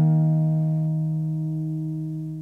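Acoustic guitar's final chord, a D#5 power chord, left to ring out after the last strums and fading away steadily as the song ends.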